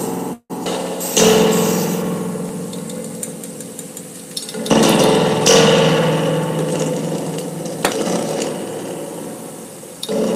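Springs of an open spring reverb tank struck and scraped with a wire, each hit a metallic clang that rings on and slowly dies away. Big hits come about a second in and again around five seconds in, with a sharp tick near the eighth second.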